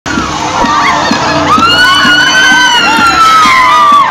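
Amusement ride passengers screaming and shouting together, with one long high scream held through the middle, over background music with a steady beat.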